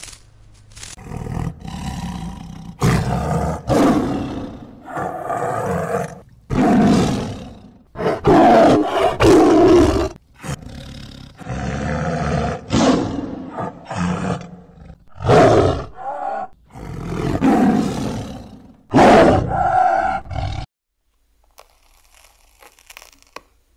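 Tiger roaring and growling in a series of about a dozen loud calls, each up to a second or so long, with short gaps between them; the calls cut off suddenly near the end.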